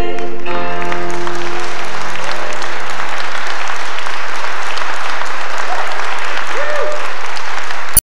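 Audience applauding in a church as the song's last sustained chord fades out over the first few seconds; the clapping then carries on steadily.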